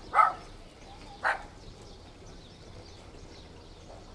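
A dog barking twice, short barks about a second apart, over a faint steady background.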